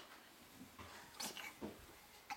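A pet animal close to the microphone, making a few short, faint breathy sounds a little past a second in.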